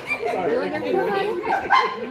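People talking over one another, voices overlapping in casual conversation.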